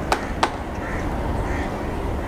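Steady low rumble of a Boeing 737's jet engines running at low power on the runway, with two sharp clicks about a third of a second apart near the start.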